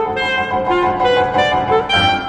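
Alto saxophone and piano playing a fast classical passage: the saxophone melody moving over repeated piano chords.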